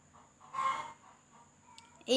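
A single brief chicken call about half a second in, in an otherwise near-silent pause, with a faint click near the end.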